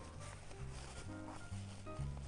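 Quiet background music: held notes changing over a low bass line.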